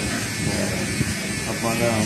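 Cordless electric hair clipper buzzing steadily as it trims the hair at the nape of the neck, with a short click about halfway through.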